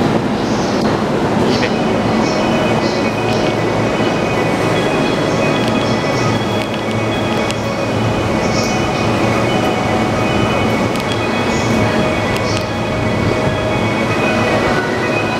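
Busy station platform beside a stopped E231 series commuter train with its doors open, a steady mix of train and crowd noise. Several steady high tones sound over it from about a second and a half in.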